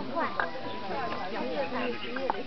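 A crowd of onlookers talking over one another in an overlapping babble of voices, with a brief knock about half a second in.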